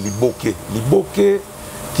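A man speaking, with a couple of briefly held, drawn-out syllables.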